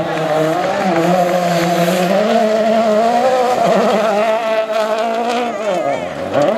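2011 Ford Fiesta RS WRC rally car's 1.6-litre turbocharged four-cylinder engine held at high revs as the car slides through a loose gravel corner, its pitch wavering, dipping briefly and climbing again near the end, with tyres scrabbling on the gravel.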